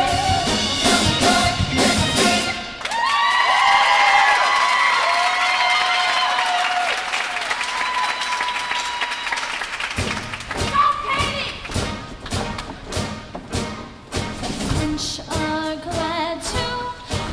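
Show choir performing with a live band: drum-driven music at first, then about three seconds in the drums and bass drop out and the choir holds a long sustained chord, and about ten seconds in the band's drums kick back in under the singing.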